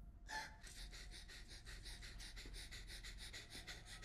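A woman hyperventilating: fast, shallow panting breaths, about seven a second, faint.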